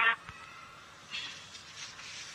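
A pause in a live launch-commentary audio feed: faint, even background hiss after the last word of an announcement ends right at the start.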